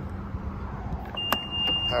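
A single steady high-pitched beep lasting about a second, with a sharp click soon after it starts: the power tailgate's warning beep as it is operated. A low steady hum runs underneath.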